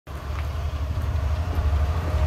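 A steady low mechanical rumble with a slight pulse, like a motor running.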